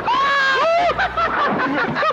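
Two riders on a slingshot (reverse bungee) ride shrieking and laughing, high overlapping voices that rise and fall without pause.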